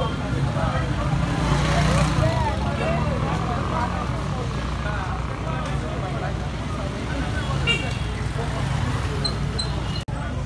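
Motorcycle engines running in street traffic, with people talking, rising briefly about two seconds in.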